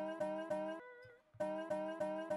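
Sliced resonator slide-guitar sample played back in Ableton Simpler, with its first slice retriggered on every step. The same guitar note repeats in a quick stutter, several times a second. The notes drop out briefly about a second in, then start again.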